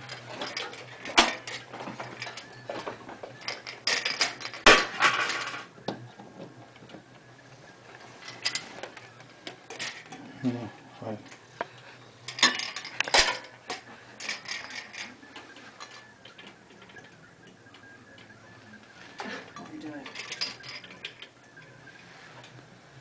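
Scattered sharp clicks and knocks at irregular moments, with brief low voices now and then.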